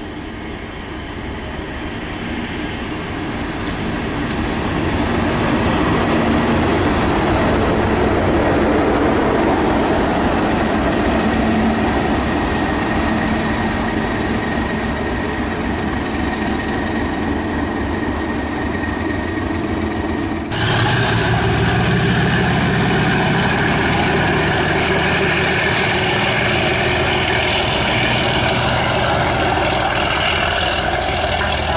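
Class 37 diesel locomotive's engine running as it approaches and passes, growing louder over the first few seconds and then holding. After an abrupt cut about two-thirds of the way in, the engine sounds closer and steadier, with a high whine that rises and then holds.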